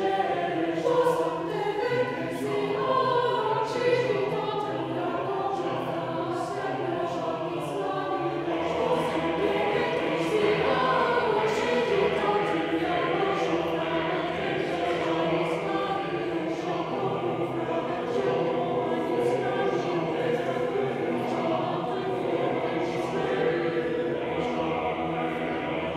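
Mixed choir of men's and women's voices singing unaccompanied, with sustained, overlapping voice parts and frequent crisp consonants.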